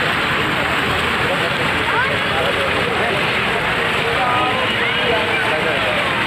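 Ornamental fountain jets splashing steadily into a pool of water: a continuous rushing hiss.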